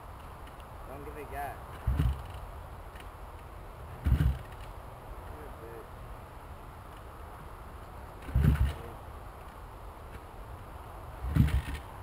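Honda CR85 big wheel's two-stroke engine being kicked over four times, a few seconds apart, each kick a short dull thump that doesn't catch, so the engine doesn't start.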